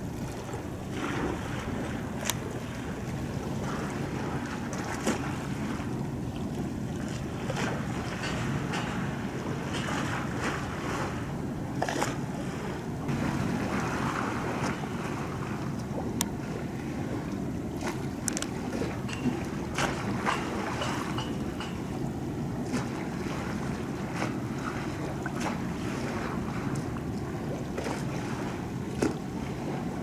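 Wind buffeting the microphone over shoreline water ambience, with scattered small clicks and splashes. Under it runs a low steady drone from the passing bulk carrier.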